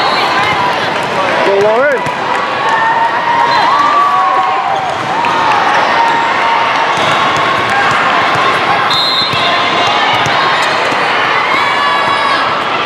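Steady din of a large sports hall with volleyball matches on several courts: many voices and balls bouncing and being hit, heard as a stream of short knocks.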